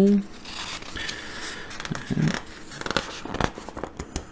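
Glossy magazine pages being turned by hand, the paper rustling and crinkling with a few light ticks.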